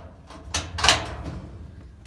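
Stainless steel cabinet door being unlatched and swung open: the sliding bolt latch drawn back, then the metal door opening, heard as two short noises about half a second apart, the second the louder.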